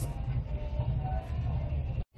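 Wind buffeting the microphone, a fluctuating low rumble, with faint background voices.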